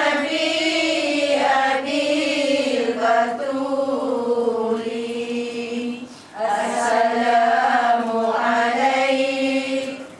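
A group of women chanting a devotional text together in unison, in long sustained phrases. There is a brief pause for breath about six seconds in.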